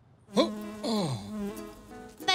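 A short cartoon sound effect: a buzzing, pitched tone that comes in suddenly, slides up, holds, then slides down and fades after about a second.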